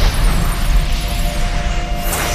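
Fantasy-action soundtrack: a deep rumbling sound effect with a sharp hit and quick downward whoosh at the start, over a held note of background music.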